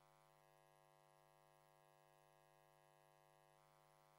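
Near silence: only a faint, steady hum in the broadcast's audio.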